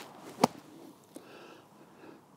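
Mizuno T7 60-degree sand wedge striking the bunker sand under a golf ball in a splash shot: one sharp strike about half a second in.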